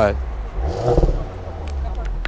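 Audi S5's turbocharged 3.0-litre V6 idling, heard at its quad exhaust tips, with a light blip of the throttle about a second in.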